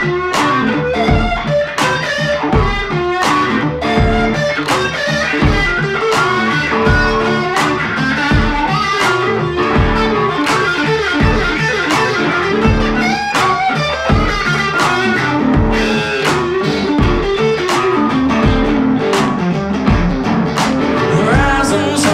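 Instrumental blues-rock break: two semi-hollow electric guitars play a gritty swamp-blues riff and lead lines over a steady, regular low beat.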